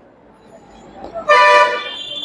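A vehicle horn honks once, a little over a second in: a single steady tone of about half a second that then tails off, over low street noise.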